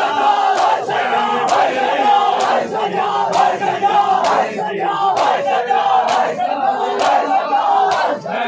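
A crowd of men chanting a noha in unison, with sharp slaps of hands on bare chests (matam) landing roughly once a second in time with the chant.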